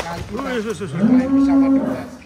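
Cattle mooing: a wavering call that settles into one long steady moo through the second half, with a sharp click at the very start.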